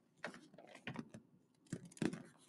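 Faint, scattered clicks and crackles of a picture book's paper pages being fingered and turned.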